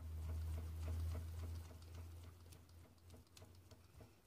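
Hand fan waved close to the face to dry freshly applied setting spray: faint irregular ticking and pattering, with a low rumble of moving air in the first half that fades after about two seconds.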